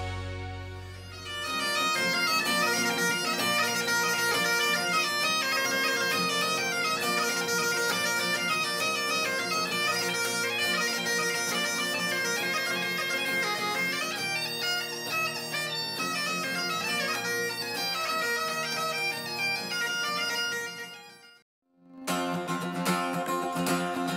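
Great Highland bagpipes playing a jig-like melody over their steady drones; the piping stops abruptly near the end. After a moment of silence an acoustic guitar starts strumming alone.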